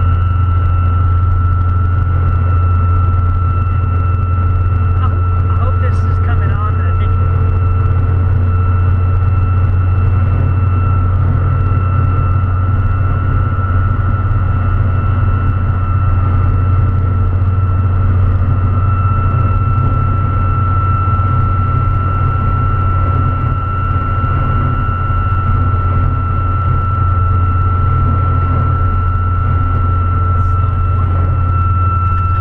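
A steady high whistle from a curved LED light bar catching the wind at highway speed, sounding like a jet, heard inside the cab over the low, even drone of a Dodge pickup's Cummins inline-six turbo-diesel and its road noise.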